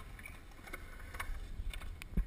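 Skateboard wheels rolling over a smooth concrete bowl: a steady low rumble with scattered light clicks.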